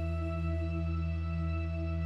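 Ambient background music: a sustained drone of held tones, deepest and strongest at the bottom, wavering slowly in level.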